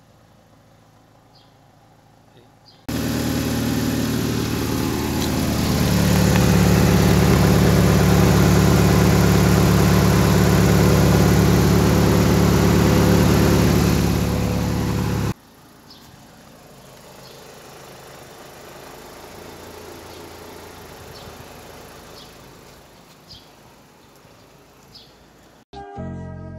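Mitsubishi Chariot Grandis idling, heard right at the tailpipe: a steady low engine note under a loud rushing sound. It starts suddenly about three seconds in, is loudest in the middle, and cuts off abruptly about halfway through, after which a much fainter steady sound remains. The exhaust leak has been repaired and the resonator deleted, so the gases now leave through the tailpipe.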